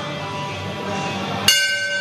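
Boxing ring bell struck once about a second and a half in, ringing on with a bright metallic tone, the signal for the next round to begin.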